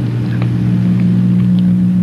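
A steady low electrical hum with hiss on an old videotape recording, heard plainly in a pause between words.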